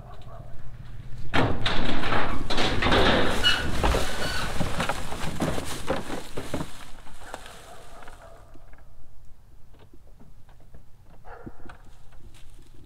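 Honda Accord floored off a car trailer's ramps. A loud burst of clattering, scraping and thuds starts about a second in and dies away after about six seconds, as the car rolls off into the yard.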